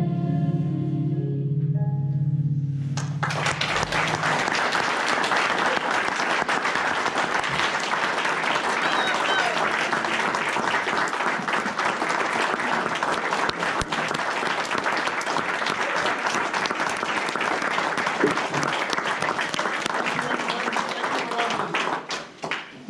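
The last held chord of a song with guitar backing ends about three seconds in, then steady applause from a roomful of people until near the end.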